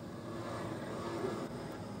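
Steady background drone of a distant vehicle, with a faint even hum and no distinct events.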